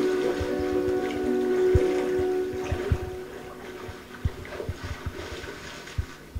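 A film soundtrack playing through a room's speakers: sustained musical tones that fade away about halfway through, leaving quieter lake water sounds with scattered soft low knocks.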